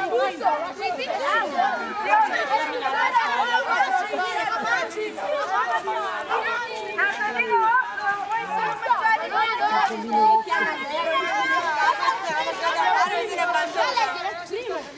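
A group of children and adults chattering, many voices talking at once with no single speaker standing out.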